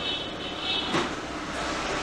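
Steady mechanical background hum, with one light knock about a second in.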